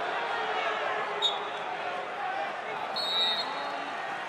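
Arena crowd and coaches shouting over a steady murmur of voices, with a short high chirp about a second in. Near the end a referee's whistle blows briefly to restart the wrestling from the referee's position.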